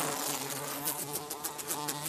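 A cartoon fly buzzing steadily, a low even buzz with a rapid flutter.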